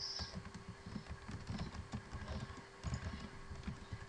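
Computer keyboard being typed on: a quick, irregular run of key taps.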